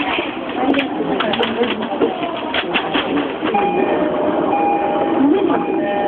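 Yamanote Line electric commuter train running slowly, heard from inside the front car, with scattered sharp clicks. About three and a half seconds in, a steady whining tone sets in, pauses briefly and comes back. A voice speaks over it.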